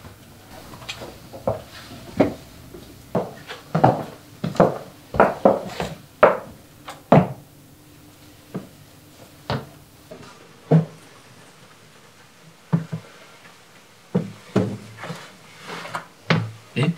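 A series of irregular wooden knocks and clunks, like a cupboard or door being handled, dense for the first ten seconds and then fewer and further apart.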